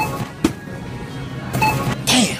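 Self-checkout scanner beeping twice, two short electronic beeps about a second and a half apart, with a sharp click between them.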